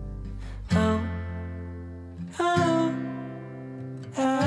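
Instrumental stretch of an indie-folk song: acoustic guitar chords struck about a second in and again near the middle, each left ringing and fading.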